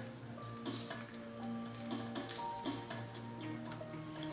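Background instrumental music with steady held notes, with a few faint clicks and scrapes of a phone's SIM tray and plastic case being handled.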